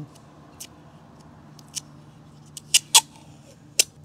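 Barcode sticker being peeled off a lawn mower blade by hand: a few sharp crackling ticks, the loudest two close together about three seconds in and another just before the end.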